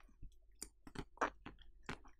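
Close-miked mouth chewing food, a string of short wet clicks at irregular spacing, about three or four a second.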